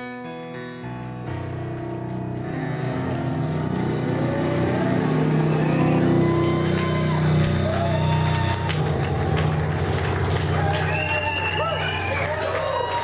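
Live blues band coming back in after a brief pause: sustained keyboard and bass chords swell with drums and cymbals, growing louder over the first few seconds. Wavering high lead notes play over the top in the second half.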